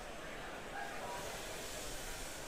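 Faint, steady rushing hiss with a low rumble beneath it, without any clear rhythm or tone.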